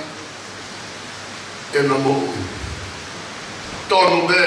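A man's voice through a microphone, mostly in a pause: a steady hiss fills the gaps, broken by one short spoken sound about two seconds in and a low thump on the microphone just after it, before he speaks again near the end.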